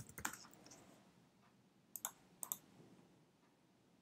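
Faint computer keyboard key presses and clicks: a quick run of keystrokes at the start, then two short clicks about half a second apart near the middle.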